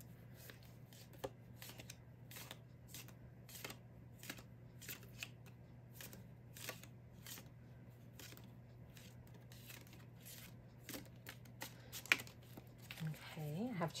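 A deck of round Tea Leaf Fortunes oracle cards being shuffled by hand: a long, irregular run of soft card flicks and taps, over a faint steady low hum.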